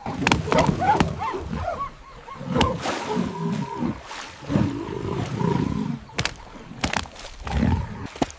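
A hippo and a pack of African wild dogs fighting: deep roaring growls mixed with higher yelping calls, and a few short sharp knocks about three quarters of the way through.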